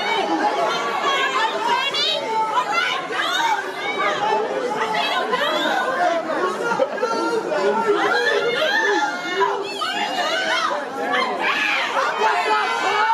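A crowd of many voices talking and calling out over one another, with some higher-pitched calls rising above the chatter now and then.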